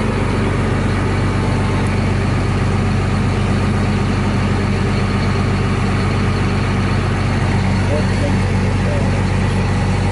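Heavy logging-machine diesel engine idling steadily, an even low drone that holds the same speed throughout.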